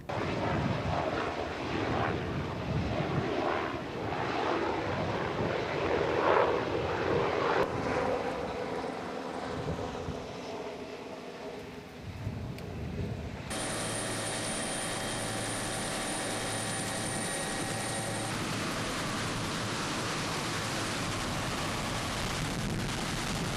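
Helicopter engine and rotor noise, uneven in level for the first dozen seconds. Then, after a cut, a steady, even drone with a thin high whine.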